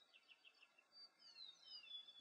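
Faint bird chirps: a few short notes, then several quick falling whistles in the second half.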